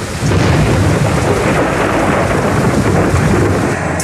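Loud, steady rushing noise with a deep rumble underneath, starting abruptly.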